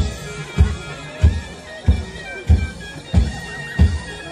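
Javanese jaranan music: a nasal reed melody, typical of the slompret used in reog and jaranan, wavers over a steady low drum beat landing about every 0.6 seconds.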